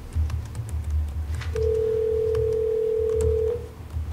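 Telephone ringback tone over a speakerphone: one steady two-second ring tone starting about one and a half seconds in, the sign of an outgoing call ringing at the far end. A low rumble and small clicks sit underneath.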